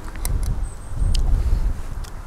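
Low, fluctuating rumble of wind buffeting the microphone, with a few faint clicks.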